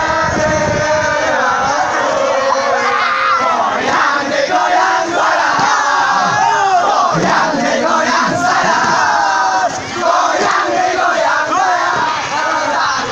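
A group of young scouts shouting a yel-yel (a Pramuka group cheer) together, many loud voices at once, with a brief break about ten seconds in.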